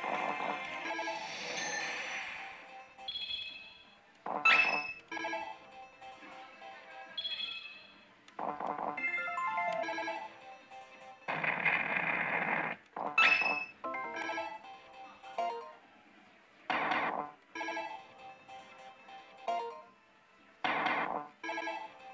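Millionゴッド 神々の凱旋 pachislot machine playing its electronic jingles and short chiming effect tones as the reels spin and stop, game after game, with a longer, louder rush of noise about halfway through.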